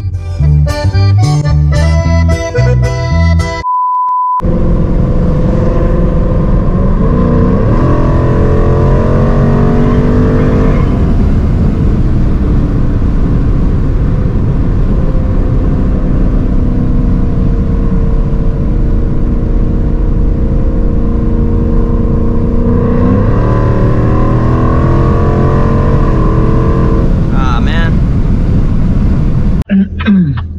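A song plays for the first few seconds. After it, a 2023 Mustang GT's 5.0-litre V8 is heard from inside the cabin, running under load with a deep rumble, its pitch climbing as the car accelerates about a third of the way in and again near the end, with steady cruising between.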